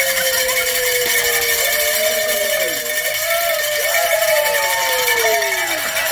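A group of people cheering with long, drawn-out whoops that slide down in pitch, over a continuous rattle of handheld noisemakers.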